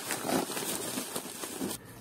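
Bubble wrap and a plastic padded mailer crinkling and rustling as hands handle them, an even crackle that stops just before the end.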